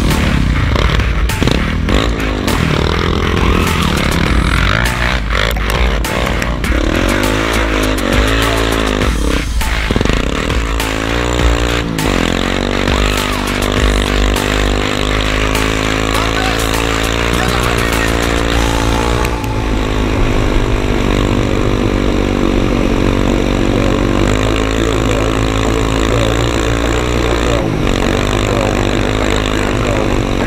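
Bombardier DS 650 X quad's engine running under riding, its pitch rising and falling with the throttle, with knocks and clatter in the first dozen seconds.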